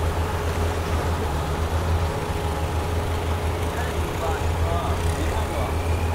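Speedboat engine running steadily under way: a constant low drone with the rush of water and wind past the hull.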